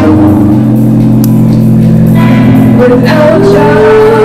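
Live experimental music: an alto saxophone playing long held notes over a steady low drone. The higher notes drop out after the start and come back near the end with a new sustained note.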